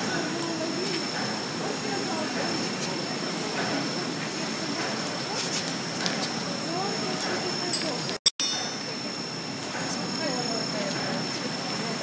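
Indistinct voices talking over the steady running noise of a PP woven-bag tape extrusion line, with a thin, steady high whine throughout. About eight seconds in, the sound cuts out for a split second with a sharp click.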